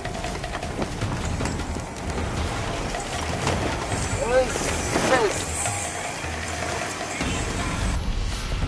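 Engine and road rumble heard inside the cabin of a small Suzuki car labouring up a rough dirt track. Brief voice exclamations come about halfway through.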